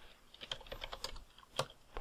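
A computer keyboard being typed on: a short, faint run of about half a dozen keystrokes, from about half a second to a second and a half in, as the word "python" is typed.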